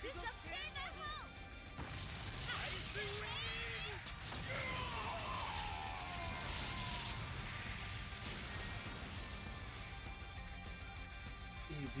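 Anime soundtrack of a combined ice-and-water magic attack: Japanese voices shouting over dramatic music, with loud crashing sound effects as the ice engulfs the enemy.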